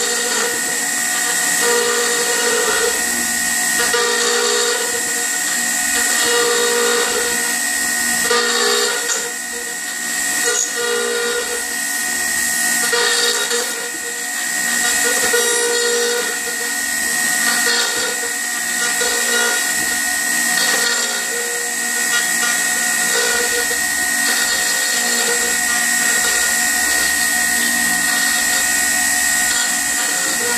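Router on a pantograph running at speed with a steady high whine, its bit cutting into a square wooden blank. A lower note comes and goes about every second or so as the cut loads and eases.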